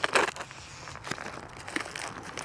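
Product packaging being handled and opened by hand: crinkling and rustling with scattered small clicks as a box of LED fog light bulbs is pulled open.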